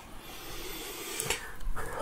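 Hands picking up and handling a pack of cylindrical 18650 lithium cells on a workbench: light rustling with a small knock a little over a second in.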